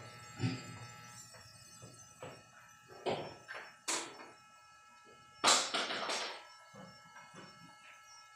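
A few scattered brief knocks and rustles in a quiet room, the loudest about five and a half seconds in, over a faint steady hum.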